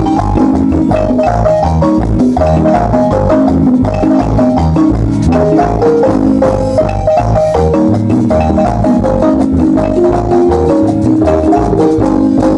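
Guatemalan marimba ensemble playing a dance tune: a melody of held notes in two voices over a bass line that repeats in a steady beat.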